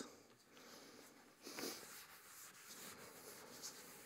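Near silence: room tone, with one brief faint sound about one and a half seconds in and faint rubbing of a felt board eraser on a chalkboard near the end.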